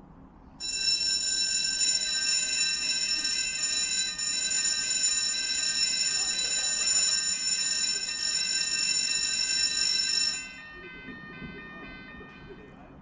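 A loud, steady, high-pitched screech of several tones at once. It starts suddenly about half a second in, cuts off about ten seconds in, and trails away in a few shifting notes for another two seconds.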